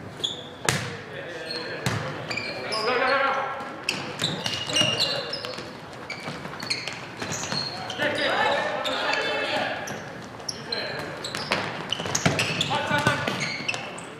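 Volleyball rally in an echoing gymnasium: sharp smacks of the ball being hit, many short high squeaks of sneakers on the hardwood floor, and players shouting calls.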